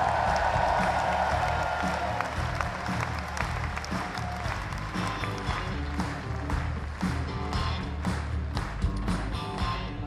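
Concert audience applauding a crew member's introduction, loudest at first and thinning out over the first few seconds, while the band keeps playing softly underneath with a low, steady backing.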